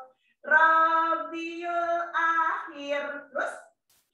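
A woman singing a children's song of the Islamic (Hijri) month names, in held, steady notes after a short pause at the start, with a brief breathy hiss near the end.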